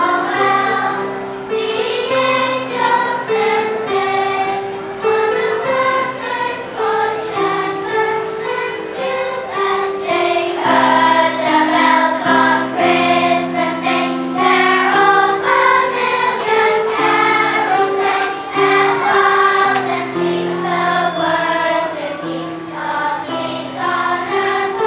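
Children's choir singing a holiday song together, over an electronic keyboard playing steady sustained chords.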